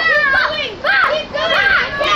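Children's high-pitched shouts and calls, overlapping voices with no clear words.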